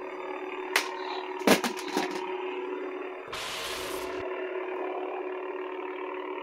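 Lightsaber soundboard humming steadily during a duel, with sharp clash effects as the blades strike about one to two seconds in, the loudest a little past one second. About a second of hiss comes between three and four seconds in.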